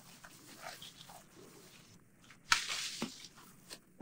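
Apple-tree leaves and branches rustling as an apple is pulled off the tree. A sharp snap comes about two and a half seconds in, followed by half a second of rustling.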